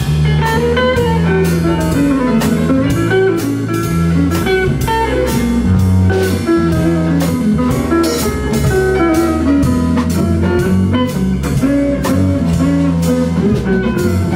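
Live jazz band in an instrumental passage: a hollow-body archtop electric guitar plays a single-note melodic line over bass and a drum kit, with a steady cymbal beat.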